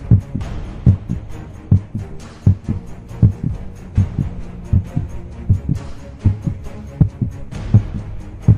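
Low, steady heartbeat-like pulse on the soundtrack: a double thump about every 0.8 s over a faint hum, building suspense ahead of a dramatic music cue.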